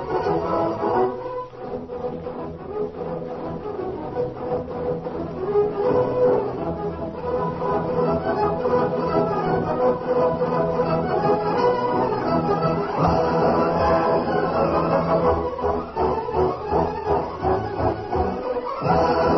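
Orchestral music with bowed strings playing steadily at full volume, the radio show's opening theme.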